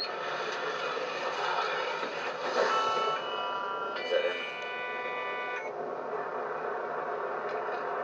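Television audio picked up off the set's speaker, muffled and hissy, with a short run of sustained electronic tones in the middle that change pitch twice.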